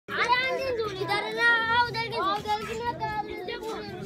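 Children's high voices calling out, with long, drawn-out notes.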